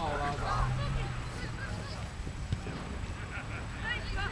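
A man's shout at the start, then faint distant shouting of players on the football pitch over a steady outdoor rumble.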